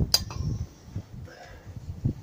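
A single short metallic clink just after the start, followed by low, uneven rumble of wind on the microphone.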